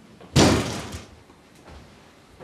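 A door shutting hard once, about a third of a second in, with a short fading tail.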